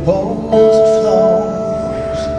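Live performance of a slow ballad: a band's long held chords, with a male voice singing over them.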